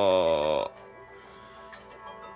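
A man's voice moaning a drawn-out 'ohh' that falls in pitch and breaks off about two-thirds of a second in. It is the last of a run of such groans about a second apart, voicing a character in pain.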